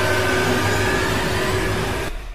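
Sound effect of an animated subscribe-button outro: a steady, loud rush of noise with a low hum beneath it.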